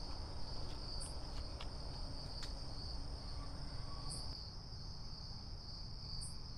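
Night crickets trilling steadily in one continuous high tone, with a couple of brief higher chirps and a low outdoor rumble beneath.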